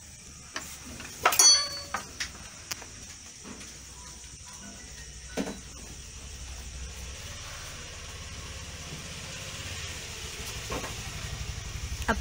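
Steady background hum and faint hiss with scattered sharp knocks and clicks; the loudest, about a second in, rings briefly after the hit.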